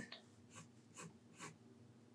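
Pencil lead scratching faintly on drawing paper in a few short strokes as a curved line is sketched.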